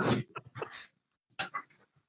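A few short, faint whimpering vocal sounds from a person, in two small clusters, then silence.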